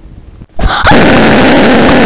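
A sudden, extremely loud scream bursts in about half a second in and stays pinned at full volume, so heavily distorted it is nearly pure noise.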